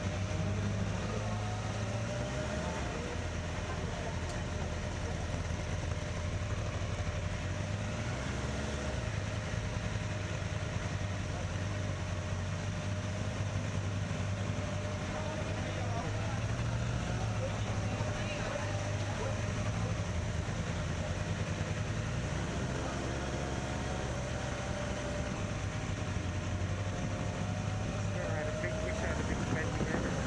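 Motorcycle engine running at low speed as the bike rolls slowly, with voices of people close by. A steady whine in the engine sound rises in pitch near the end as the bike speeds up.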